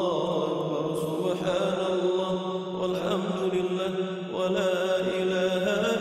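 Background vocal music without words: voices holding a long, steady, chant-like drone, with new notes coming in a few times.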